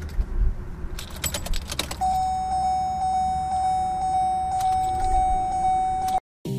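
Car keys jangling and clicking in the ignition with the engine not running, then from about two seconds in a steady, high-pitched electronic warning tone from the car's dashboard.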